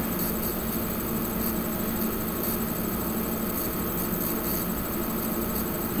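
Steady room tone: a low, even hum and hiss with no distinct events.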